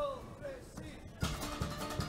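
A short spoken phrase, then about a second in a murga's band strikes up: strummed guitar with bass drum strokes.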